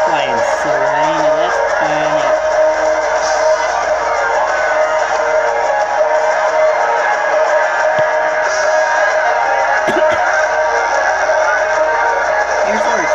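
A film soundtrack played through a TV and picked up by a phone: music with guitar and voices over a steady wash of cheering concert crowd.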